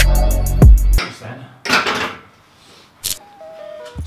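Background music with a heavy beat stops about a second in. Then comes a brief rustle and, about three seconds in, one sharp click as a lifting belt's metal lever buckle is handled.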